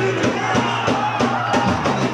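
Live rock band playing through a club PA, recorded on a camcorder: drums to the fore with regular hits, guitar, and the bass dropping back for this passage.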